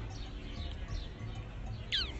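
Small birds chirping in short falling calls, the clearest one near the end, over a low steady background rumble.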